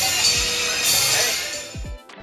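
Sri Lankan-style pop music, close to Indian music, played very loud through a bus's onboard Kenwood speaker. It fades away in the second half.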